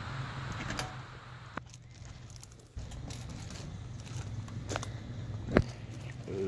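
Stainless steel smoker cabinet door being unlatched and swung open: a few sharp metal clicks, the loudest near the end, over a steady low hum.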